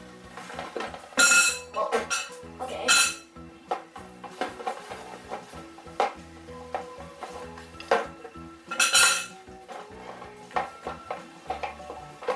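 Plastic glue bottles clattering and knocking against each other and a glass bowl as a hand rummages through them and picks some out, with loud bursts of clatter about a second in, near three seconds and near nine seconds. Background music plays underneath.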